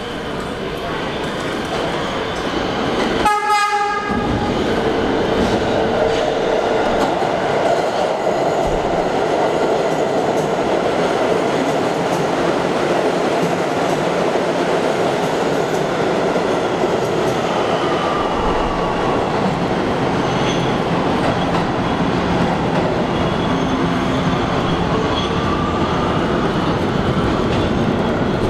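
Kawasaki R211T subway train sounding one short horn blast about three seconds in, then running through the station at speed: a loud, steady rush of wheels on rails that carries on as the train goes away.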